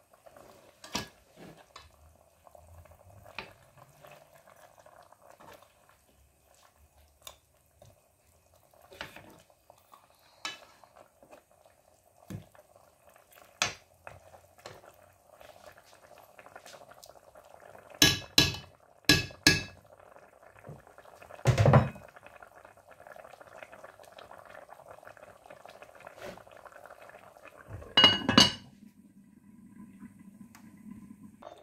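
Stew simmering in a pot with a soft, steady bubbling, while a spoon scrapes and knocks against the pot. Several loud clanks of metal on the pot come about two-thirds of the way through, and a last clatter comes near the end as the glass lid goes on.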